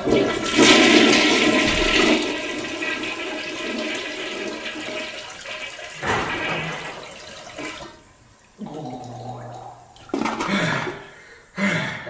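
A loud rush of water like a toilet flushing, starting at once and fading away over several seconds. A few shorter, softer sounds follow near the end.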